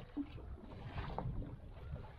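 Low wind rumble on the microphone over water lapping against a small boat's hull.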